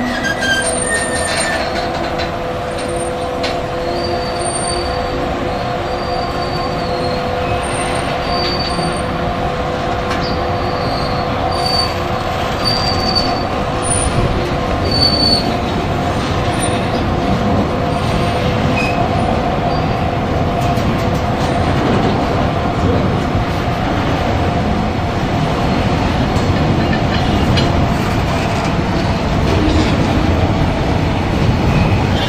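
Freight train of open wagons rolling slowly past, with a steady rumble of wheels on rail. The wheels squeal with a steady tone throughout, and short high-pitched squeals recur every second or two in the first half.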